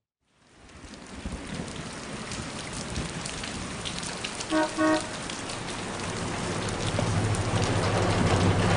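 Heavy rain pouring on a city street, fading in from silence and growing steadily louder. Two short car-horn toots sound about halfway through, and a low rumble builds near the end.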